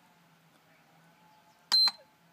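IMAX B6AC balance charger giving one short, high-pitched key beep near the end as its front button is pressed, switching the display from the cell voltages to the charge status screen.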